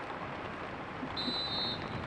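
Steady rain noise over the pitch, with one short, high referee's whistle blast a little over a second in, signalling the free kick to be taken.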